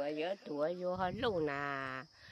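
Speech only: a person talking, ending on one long drawn-out syllable just before the voice stops.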